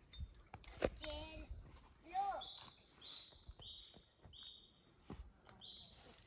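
Faint bird calls: a high whistled note repeated about five times, each about half a second long, over faint distant voices.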